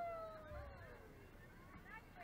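A long, high-pitched yell that slides down in pitch, with other shorter shouts overlapping near the end: onlookers urging on a batter who has just hit the ball.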